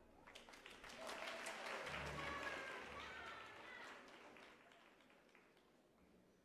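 Audience applause, thin and scattered, mixed with faint voices. It swells about a second in and dies away within about five seconds.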